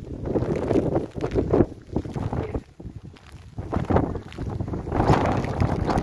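Wind buffeting the microphone: a low, noisy rush that swells and drops away in several gusts.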